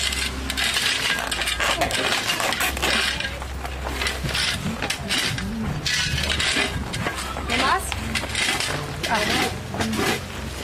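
Repeated scraping strokes of a hand tool on PVC drain pipe, with small stones of the gravel bed clinking and knocking.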